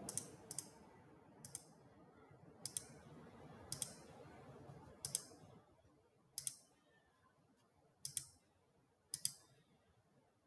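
Computer mouse button clicks, about nine spread irregularly a second or so apart. Each one is a quick double tick, the button pressed and released.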